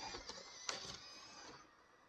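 Small RC crawler's electric motor and gear drive whining as it drives up the course. One sharp knock comes about 0.7 s in, as the truck bumps over the terrain, and the whine dies away after about a second and a half.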